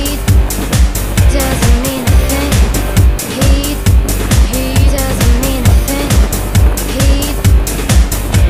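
Pop music with a strong, steady beat of about two beats a second and a repeating melodic line that slides up and down in pitch.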